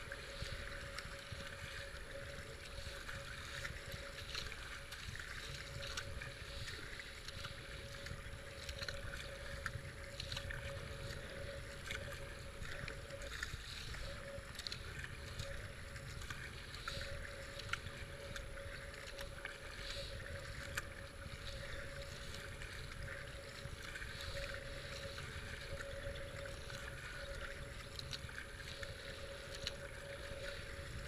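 Fast river water rushing and splashing around a kayak being paddled, with low wind rumble on the microphone and a faint steady hum throughout.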